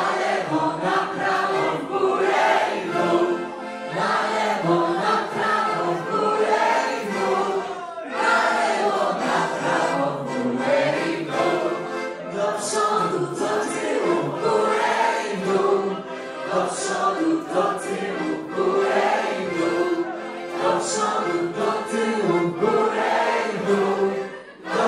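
A group of people singing a song together in chorus, with no bass or drum backing.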